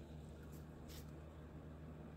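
Very quiet room tone with a steady low hum and one faint click about halfway through.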